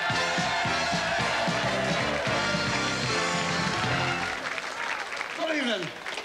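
A short burst of band music over audience applause; the music stops about four seconds in.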